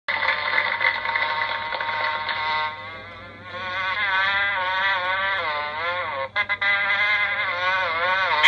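Soundtrack music from a VHS tape playing on a television, picked up through the room. The sound drops out briefly a couple of times about six seconds in as the tape cuts between scenes.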